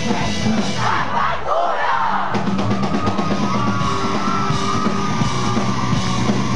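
Live rock band playing loud through a club PA: guitars, bass and drums with shouted vocals. The low end drops out briefly about a second and a half in, then the full band comes back under a long held note.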